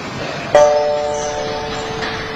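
Background music: a single ringing chord struck about half a second in, fading slowly over a steady hiss.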